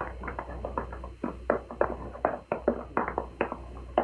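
A rapid, irregular series of short taps and knocks, several a second and uneven in strength, from a narrow-band old radio recording.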